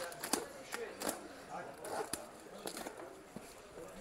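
Utility knife slitting the packing tape on a cardboard box: a string of short scrapes and sharp clicks at irregular intervals.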